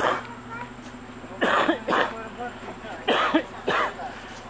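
Short, loud bursts of human voice, five in quick succession, each with a falling pitch, like coughs or brief shouted calls, over a quieter steady background.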